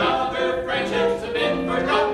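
Two men and a woman singing a show tune together, holding sustained notes.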